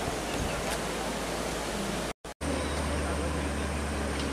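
Steady outdoor hiss, broken by a short drop to silence a little after two seconds. After the drop, the low, steady engine hum of an approaching pickup-truck taxi (songthaew).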